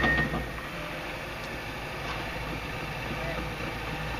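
A John Deere 750L crawler dozer's diesel engine idling, a steady low hum. A high electronic beep cuts off just after the start.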